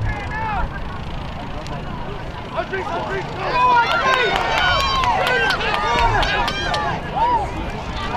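Sideline spectators shouting and yelling, many voices overlapping, swelling about three and a half seconds in as a ball carrier breaks toward the try line. A steady low rumble runs underneath.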